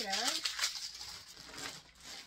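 Clear plastic bag rustling and crinkling as a packed clothing item is picked up and handled. It is loudest in about the first second, then fades to faint handling noise.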